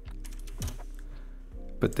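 A couple of computer keyboard key presses, one near the start and one about two-thirds of a second in, over faint background music.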